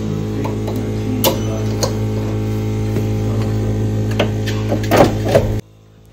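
Steady electrical hum of a Dentsply Sirona dental milling unit standing idle after milling, with a few light clicks and knocks as its door is opened and the milled block is reached for inside. The hum cuts off suddenly near the end.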